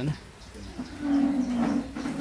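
A single low, steady, drawn-out voiced sound, a little under a second long, begins about a second in. Before it comes the soft rustle of book pages being turned.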